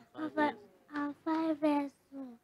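A young child singing a few short, held notes into a handheld microphone, with brief pauses between them.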